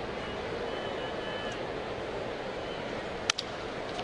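Steady murmur of a ballpark crowd, then one sharp crack of a bat hitting a pitched fastball about three seconds in.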